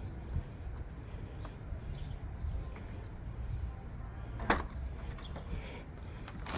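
Quiet outdoor background with a faint low hum, broken by a single sharp click about four and a half seconds in, followed by a brief high chirp. The click is the Acura TLX's trunk latch releasing on a remote trunk-release command.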